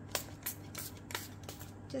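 A hand-pumped trigger spray bottle of isopropyl alcohol giving a few short squirts, misting the silicone mould to break the surface tension before resin is poured.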